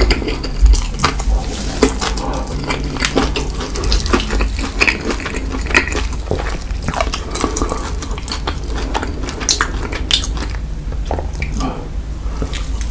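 Close-miked chewing of spicy Cheetos-crusted fried chicken: wet mouth smacking with many small crackles and clicks.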